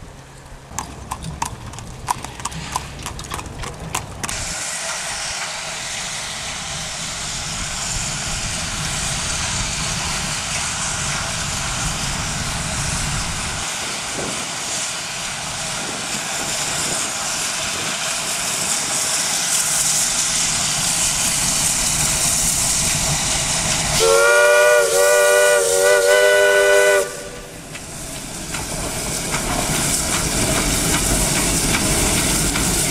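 Steam locomotive on a sugar cane train working with a steady hiss of steam and exhaust, then about 24 seconds in sounding its chime whistle: three short blasts in a chord of several tones. After the whistle the noise of the engine grows louder again as it comes nearer.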